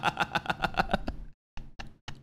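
A man laughing hard in a rapid run of short voiced pulses that cuts off abruptly about a second in. A couple of short gasping breaths follow near the end.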